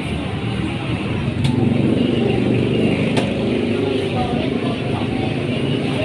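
A motor vehicle engine running close by, swelling about a second and a half in and easing off later, over murmuring voices and a couple of faint clicks.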